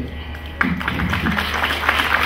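Audience applauding, starting suddenly about half a second in as a dense patter of many hands clapping.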